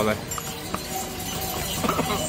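Steady rush of falling water from a mountain waterfall, with two faint hoof clops of a pony or mule on the stone trail.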